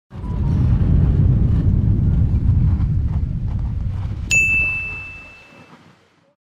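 Logo-intro sound effect: a low rumble that slowly fades away, with a single bright chime struck about four seconds in that rings out for over a second.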